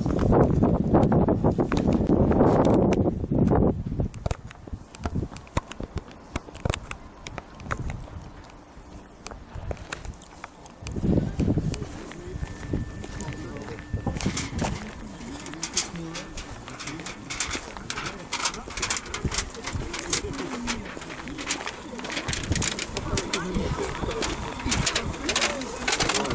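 Outdoor ambience of people talking in the background, with a loud low rumble of wind on the microphone in the first few seconds, the loudest part.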